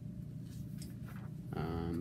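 Low steady room hum with faint paper rustling as the pages of a large hardcover book are handled, then a man's voice starts near the end.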